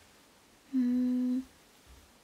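A woman's short closed-mouth hum, a single steady "mm" lasting about two-thirds of a second, beginning about three-quarters of a second in.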